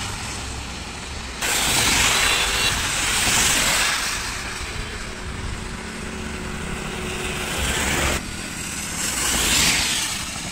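Road vehicles passing on a rain-wet highway: the hiss of tyres on wet tarmac with engine rumble underneath, swelling loud as each vehicle goes by. The sound changes abruptly about a second and a half in and again about eight seconds in.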